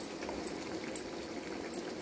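A tomato-based chicken and chickpea stew simmering in a wide pan, bubbling steadily with a few faint pops from bursting bubbles.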